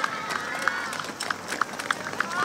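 Outdoor crowd background: faint, distant voices with a handful of short, sharp clicks or claps scattered through it.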